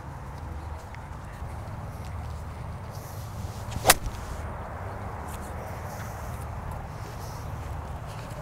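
A golf iron striking the ball from the semi-rough: a single sharp crack of the club meeting ball and turf about four seconds in, over steady low outdoor background noise.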